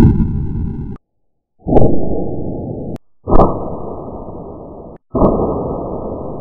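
Four sudden, muffled blasts, one about every one and a half to two seconds, each fading away and then cut off into dead silence: edited shot sounds for the Bug-A-Salt salt gun firing.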